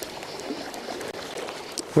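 Steady hiss of a shallow river flowing, with light rain falling on the water.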